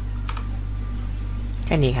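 Two quick keystrokes on a computer keyboard about a third of a second in, the shortcut that saves the After Effects project, over a steady low hum.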